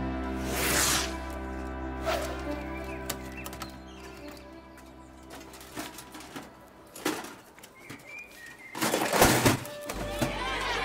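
A short musical transition sting: a held chord fading out, with a falling whoosh under a graphic wipe about half a second in. Quieter outdoor ambience follows, with scattered light knocks, a brief bird chirp, and a louder rush of noise near the end.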